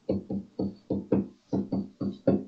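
A man's voice in about eight short, evenly paced, sing-song syllables, like humming or muttering to a tune.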